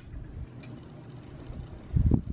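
Faint, low handling rumble with a short dull thump near the end.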